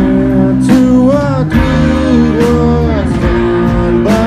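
Live rock band playing loudly, led by electric guitars, with regular drum hits.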